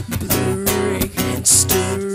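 Acoustic guitar strumming chords in a steady rhythm, with no singing.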